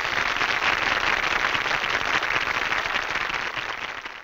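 Audience applauding after the big-band number ends, a dense even clapping that fades away near the end.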